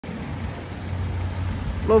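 Steady low rumble of road traffic, with a van driving past.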